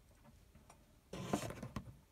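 Brief rustling with a few sharp clicks from hands handling things, starting about a second in and lasting under a second, against faint room tone.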